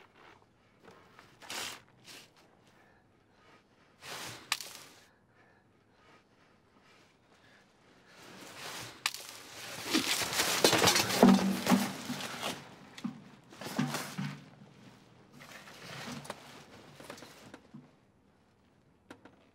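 Loose papers and debris rustling and scraping: two short bursts in the first few seconds, then a louder, longer stretch of rustling about halfway through, with a low sound mixed in under it, tailing off into smaller bursts.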